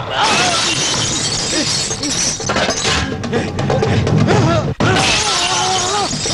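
A glass pane smashing and shattering at the start, over loud background music. A man shouts in the last second.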